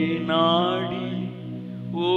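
A man singing a slow worship melody over sustained accompanying chords; his voice drops away a little over halfway through while the chords hold.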